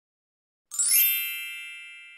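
A single bright electronic chime sound effect, striking about two-thirds of a second in and ringing out with several high tones that fade away slowly.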